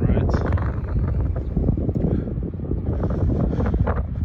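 Wind buffeting the microphone: a loud, low rumble.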